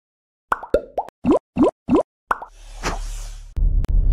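Cartoonish sound effects of an animated logo intro: a quick run of short pops, then three rising bloops about a third of a second apart, then a swelling whoosh over a low bass hum and a couple of sharp hits near the end.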